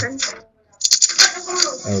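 A 3x3 speedcube being turned rapidly by hand: a fast, dense run of plastic clicks and clacks starting about a second in, the opening moves of a timed solve.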